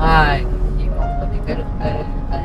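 Inside a moving car: a steady low rumble of road and engine noise, with background music underneath. A short, loud vocal sound comes at the very start, and someone murmurs "ừ" near the end.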